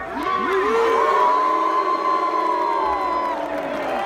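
Crowd of football fans cheering and yelling, many voices at once. The cheer is loudest about a second in and tails off near the end.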